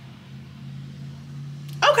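A quiet stretch with only a low steady hum, then a woman's voice starts near the end.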